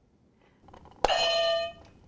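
Quiz buzzer sounding once about a second in: a steady electronic tone, cut off after under a second. It is a player buzzing in to answer.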